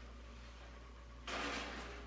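A heated PETG plastic sheet being pulled out of a toaster oven, sliding over the sheet-metal flashing on the rack: a short scraping rasp about a second in, over a low steady hum.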